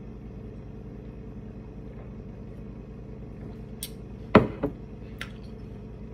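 Steady low hum in the room. About four seconds in comes a click, then a sharp knock and two lighter taps: a small drinking cup being set down on the counter.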